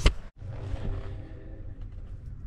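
A sharp knock from the camera being handled, then a steady low wind rumble on the microphone with a faint hiss and a few light ticks.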